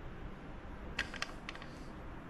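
A few light, irregular metal clicks from a small hand tool tightening a 7/16 screw into an amplifier's mounting bracket, starting about a second in.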